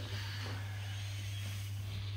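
A steady low hum with no other distinct sounds.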